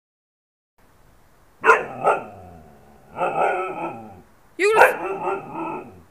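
Siberian husky howling in a 'talking' way: two short sharp barks a little under two seconds in, then two longer drawn-out calls that bend in pitch.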